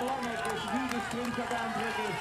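Mostly speech: a man's voice talking over steady background crowd noise.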